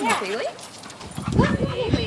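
A dog vocalizing in drawn-out calls that swoop up and down in pitch, one near the start and another in the second half.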